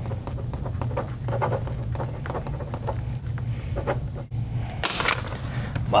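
A steady low hum with many scattered light clicks and rustles over it.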